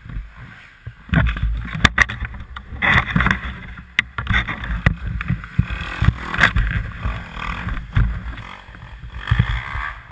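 Irregular knocks, thumps and scraping of a downed dirt bike being handled and stood back up in snow, jolting the bike-mounted camera; no steady engine note.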